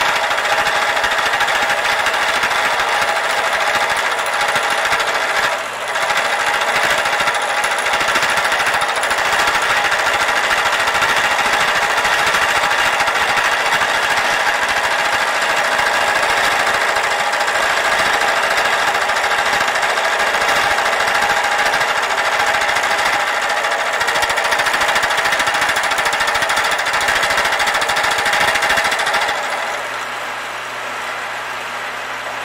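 Milling machine with an end mill cutting the metal hub of a wagon wheel, a loud, steady metal-cutting noise as the cutter is walked around to enlarge the centre bore. The cut dips briefly about six seconds in and eases off just before the end.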